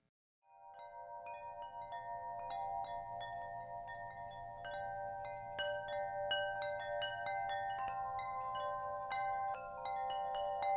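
Wind chimes ringing: many overlapping tones, with a new strike every fraction of a second. It fades in from silence about half a second in, and the strikes come thicker as it goes on.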